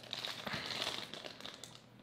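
Clear plastic bag holding a coiled USB cable crinkling as it is lifted and handled, a fine crackle that dies away near the end.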